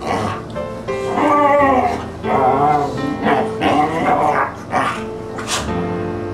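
A dog's wavering, pitch-bending play vocalizations, growly 'talking' in three runs, the loudest about a second in, over soft piano music. A short sharp sound comes near the end.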